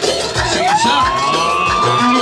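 Live wedding band music over a crowd of dancing guests; about half a second in, a single long note glides upward and is held high.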